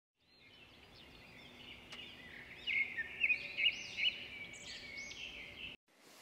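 Birdsong: a chorus of short chirps and whistles that fades in, grows louder in the middle with several prominent chirps, and cuts off abruptly just before the end.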